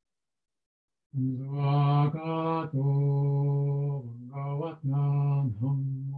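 A Buddhist monk chanting in a male voice, starting about a second in: long phrases held on one steady low pitch, with short breaks between them.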